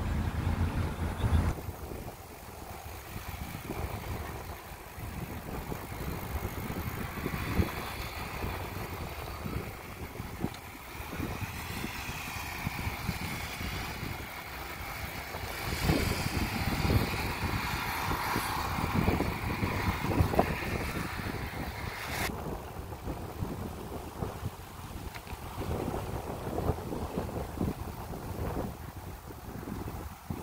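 Wind buffeting a phone microphone while riding a bicycle over pavement, with tyre rumble and irregular small knocks from the ride. A brighter hiss swells in the middle and cuts off suddenly about 22 seconds in.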